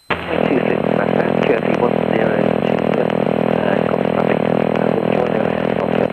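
Piper PA-28 light aircraft's piston engine droning steadily, picked up through the cockpit intercom. It cuts in abruptly at the start and drops out suddenly just after the end.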